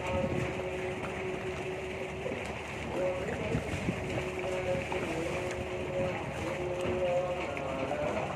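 Riverside ambience: a steady wash of boat engine and wind noise, with held tones that step up and down in pitch throughout.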